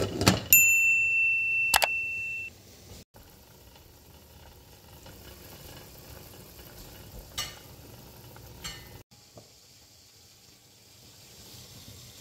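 A glass pot lid clinks down onto a pot, and an electronic beep sounds as one steady tone for about two seconds. A faint, even simmer of the broth in the pot follows, with a couple of faint clicks.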